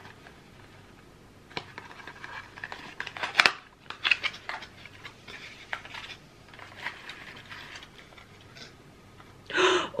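Handling of a cardboard advent calendar: scattered light scrapes, taps and rustles as a small cardboard door is worked open and a little box is pulled out, the loudest a sharp scrape about three and a half seconds in.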